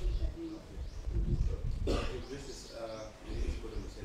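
Birds chirping repeatedly over a low rumble, with faint voices in the background and a sharp click about two seconds in.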